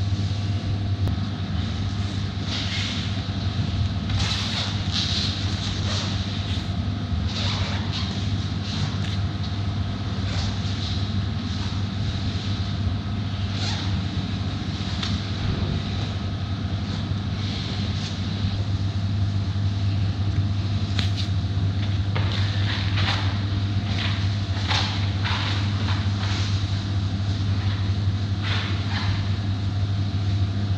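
Steady low mechanical hum of a room's ventilation, with scattered light clicks and knocks.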